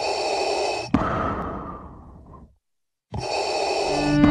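Darth Vader-style mechanical respirator breathing sound effect: a hissy inhale, a sharp click about a second in, then a long fading exhale, a brief silence, and the next inhale starting near the end.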